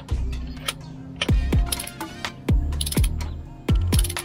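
Background electronic dance music with a steady kick drum, hi-hats and a bass line.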